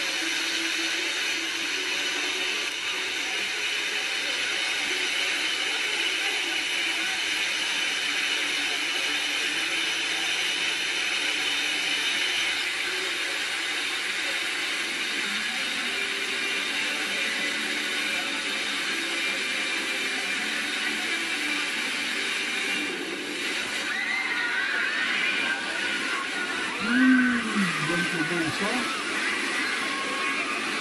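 Steady rushing of water at a wave pool with waterfalls. Crowd voices come in during the last few seconds, and one voice calls out loudly about 27 seconds in.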